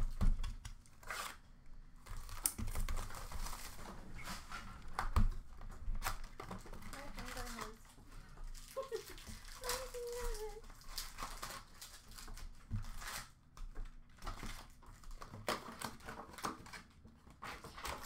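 Hockey card packs being torn open and handled: wrappers crinkling and tearing, with irregular clicks and taps of cards being sorted.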